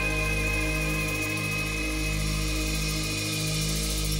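A live progressive rock band with violin, electric guitar, brass and keyboards playing a slow, sustained passage. A long high note is held over low notes that change about once a second, and it fades near the end.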